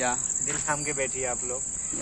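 Crickets chirring in a steady, high-pitched chorus that does not let up, under men's voices talking.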